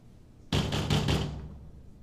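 Knuckles knocking on a metal grille security door: a quick run of about five knocks, with a short ringing tail.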